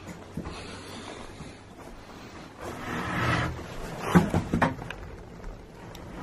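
Quiet rustling and handling noise from a handheld camera on the move, with a breathy hiss about three seconds in and a few short knocks about a second later.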